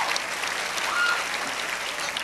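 Audience applauding steadily, a dense spread of hand claps.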